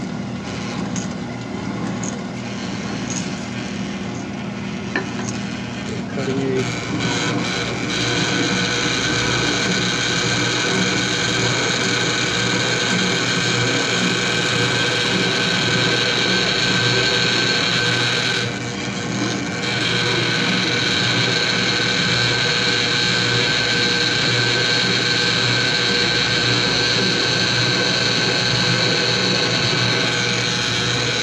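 An IDL 650 valve seat and guide machine's spindle cutter is boring out the old exhaust valve seat in a cast-iron small-block Chevy 327 cylinder head, ahead of a hardened seat being fitted. The cutting noise is rough at first and settles into a steady, louder cut with a high whine about eight seconds in. It eases briefly once a little past the middle.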